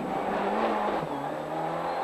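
Rally car engine heard from inside the cockpit under way, its note climbing, dropping sharply about a second in, then climbing again.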